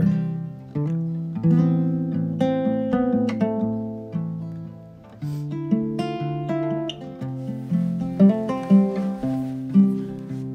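Solo acoustic guitar being played, a run of picked chords and single notes that ring and fade, with a few sharper, louder strums near the end.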